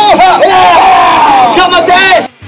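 A group of men shouting a haka in unison: loud, drawn-out chanted calls from several voices together.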